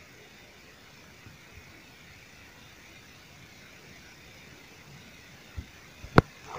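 Faint steady background hiss of a quiet room during a pause in the reading, with a soft click near the end.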